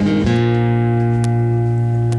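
Acoustic guitar strums a final chord about a quarter second in and lets it ring out steadily, closing the song.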